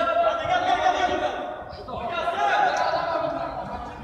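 Men's voices shouting and calling out in long drawn-out calls, in two stretches with a short break about halfway through.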